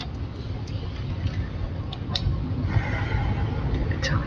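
Steady low hum of room noise with a few small clicks, and a faint murmur of voices near the end.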